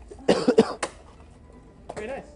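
A person coughing: one short burst of a few coughs about a quarter second in, lasting under a second.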